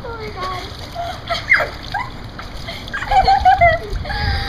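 Swimming-pool water splashing around girls standing in it, with their high voices breaking out in short rising cries and squeals.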